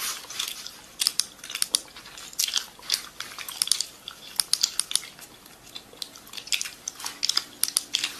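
Fast typing on a laptop keyboard: rapid clusters of light key clicks with short pauses between the bursts.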